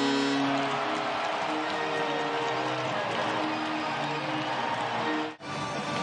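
Arena goal celebration music playing over a cheering crowd, with steady held notes. The sound cuts off abruptly about five seconds in.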